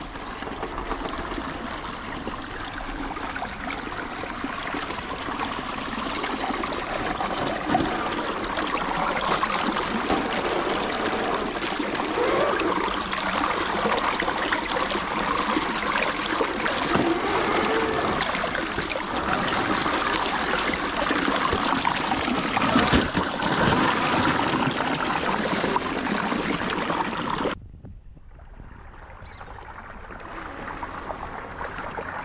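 River water rushing and trickling over rocks close by, a steady dense rush that cuts off suddenly near the end.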